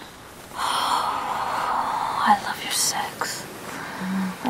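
A woman's soft, breathy whispering: a breathy sound lasting about two seconds, then a short whispered phrase.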